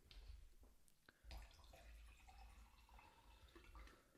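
Near silence, with faint sounds of a man drinking.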